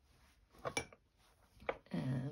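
Handling noise from a stitched fabric piece being turned over on a wooden tabletop: two brief rustles or taps, one about two-thirds of a second in and one near the end.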